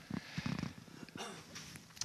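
A short pause in a man's talk: faint room tone with a few soft clicks and a brief low, breathy sound near the start.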